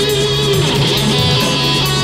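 Rock band playing, with electric guitars to the fore over sustained bass notes and steady drum and cymbal hits.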